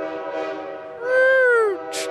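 Voices imitating a train whistle: a held, whistle-like note, with a louder call that slides down in pitch about a second in.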